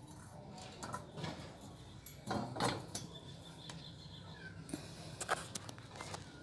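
A few light knocks and clicks of objects being handled, the loudest about two and a half seconds and five seconds in, over a faint low hum.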